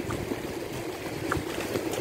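Sea surf washing up over wet sand at a beach, a steady noisy wash.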